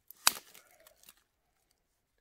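A single sharp snap about a quarter second in, then faint rustling of paracord and a stick toggle being handled; the sound drops out after about a second.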